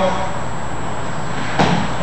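A single sharp thud about one and a half seconds in, over a steady background hiss: a grappler's body striking the padded mat during ground grappling.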